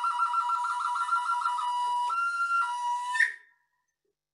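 Small wooden Native American-style flute playing a high melody: a rapid trill between two neighbouring notes, then a held note that steps up and back down, ending with a short high flick about three and a half seconds in.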